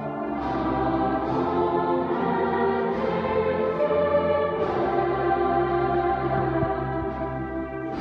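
School choir singing sustained chords that change every second or so, with long, deep bass notes held beneath, in the reverberant acoustic of a cathedral.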